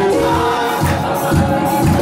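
A mixed group of men and women singing a gospel worship song together into microphones, over keyboard accompaniment with a steady low beat.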